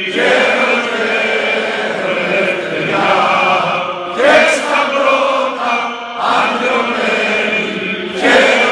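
A large crowd singing together in unison, in long held phrases with brief breaks about four and six seconds in.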